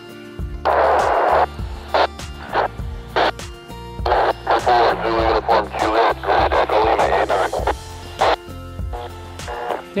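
Background music with steady low held notes. Over it come loud bursts of noisy, garbled voices from a handheld transceiver's speaker as it receives an amateur satellite's FM downlink, one burst near the start and a longer one in the middle.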